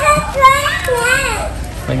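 A toddler's high-pitched voice calling out in a rising and falling sing-song for about a second, without clear words.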